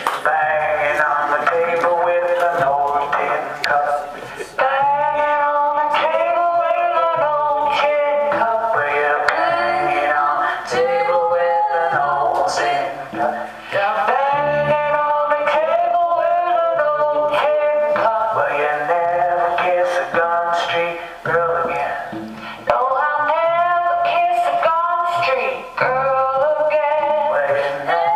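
Live band music with electric guitar: a bending, melodic lead line over a steady repeating low beat. It briefly drops in level three times.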